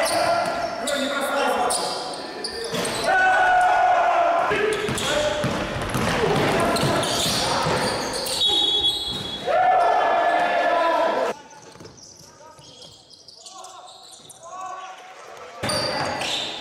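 Basketball game sound in an echoing gym: the ball bouncing on the wooden court amid players' footsteps and calls. It drops to a much quieter stretch about two-thirds of the way through.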